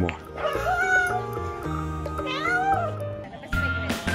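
A cat meowing twice, each call rising and then falling in pitch, as it begs for food held above it. Background music plays under the calls.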